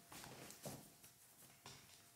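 Near silence with a few faint clicks and rustles from shears, comb and hand working through wet hair.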